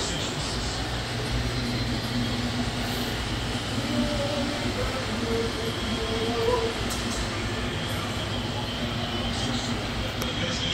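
Steady, even room rumble with a low hum running under it, and a few faint snatches of voice or TV sound.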